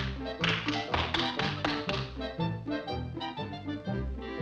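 Bouncy orchestral cartoon music with a steady rhythm of short bass notes and sharp percussive taps, several to the second.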